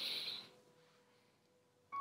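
A short breathy exhale, then near silence for most of the time until speech resumes.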